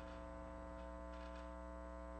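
Steady, faint electrical mains hum with a stack of evenly spaced overtones, under quiet room tone.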